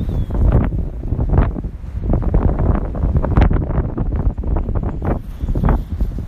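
Wind buffeting a phone's microphone: a loud, uneven rumble that rises and falls in gusts.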